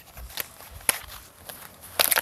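Leatt Chest Protector 5.5 Pro HD being unfastened: straps and hard plastic armour rustling, with a few sharp clicks and a quick rattle of clicks near the end.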